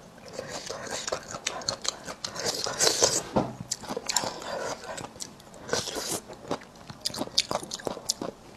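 Close-miked chewing of crisp pickled bamboo shoot strips: wet crunching and mouth clicks, busiest about three seconds in.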